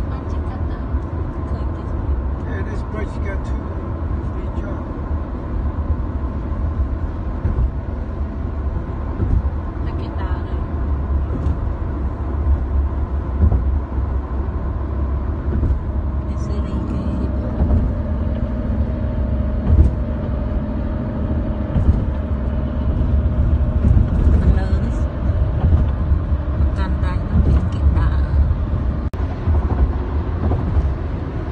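Inside a moving car's cabin: a steady low rumble of tyres and engine at highway speed.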